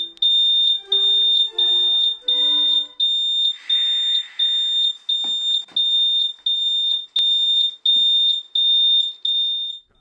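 High-pitched electronic alarm beeping steadily, about three beeps every two seconds. For the first three seconds a short melody of held notes plays over it. A brief hiss comes about four seconds in, then a few dull thumps.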